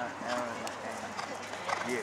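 A horse's hooves striking turf as it lands over a show-jumping fence and canters on, the strokes growing louder near the end, with voices talking in the background.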